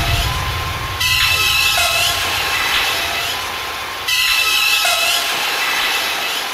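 Looped sound-effect sample in an electronic music intro: a noisy rush with high steady whistling tones and a falling sweep. It starts abruptly about a second in and again about four seconds in, fading away between the starts.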